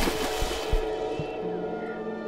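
Cartoon water sound effect: a splashing swish with a couple of low thumps as the crocodile sinks under the pond, fading out within about a second. Soft background string music then comes in.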